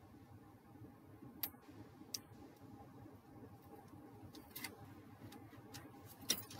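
Very quiet handling sounds: a few light clicks and taps of a scoring tool and card on a cutting mat, the clearest about a second and a half and two seconds in, with another around four and a half seconds.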